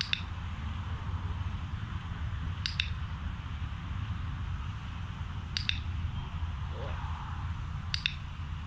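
Dog-training clicker sounding four times, about every three seconds. Each is a sharp double click as it is pressed and released, marking the dog's offered attention to the handler. A steady low rumble runs underneath.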